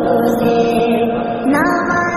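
Devotional naat music: a chant-like vocal line of long held notes with no clear words, sliding up into higher notes about one and a half seconds in.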